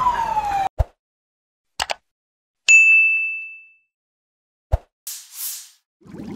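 A siren's falling wail over crowd noise cuts off suddenly under a second in, followed by a logo sound-effect sting: short thuds, a bright ding that rings out for about a second, another thud and a brief soft whoosh.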